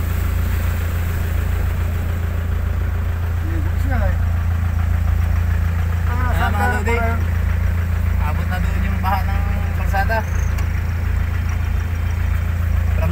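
A vehicle's engine running with a steady low rumble, heard from inside the cabin as it moves slowly through flood water.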